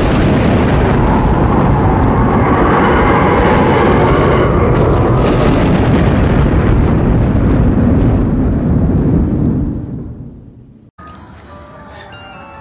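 Thunder-and-rumble sound effect of a logo intro, loud and continuous, fading away about ten seconds in.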